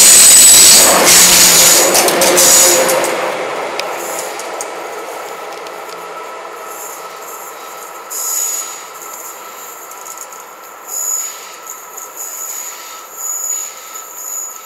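A passenger train passing close by: loud rolling noise from its wheels on the rails that fades away within about four seconds. Then a quieter stretch with a steady high whine and swells of rumble as a CC 72000-class diesel locomotive draws nearer.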